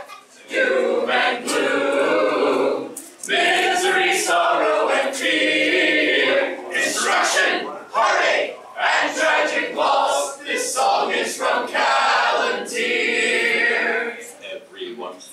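A mixed group of men's and women's voices singing an unaccompanied song together in chorus, in phrases with short breaths between them.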